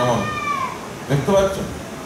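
A cat meowing once, a high cry falling in pitch near the start, followed by a short burst of a man's voice.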